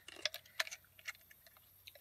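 Several faint, scattered clicks and light taps over about two seconds.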